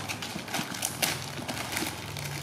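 Plastic packaging bag crinkling and rustling as it is handled, with irregular light clicks and taps.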